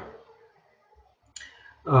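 A man's voice trails off into a pause broken by one short click, then he resumes with a drawn-out hesitant 'a'.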